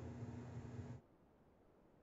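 A woman's voice holding a steady low hum, cut off abruptly about a second in, then near silence.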